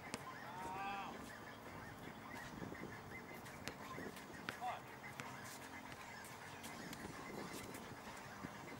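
A short honking call about half a second in, with a second brief call near the middle, over an open-air background with scattered sharp taps.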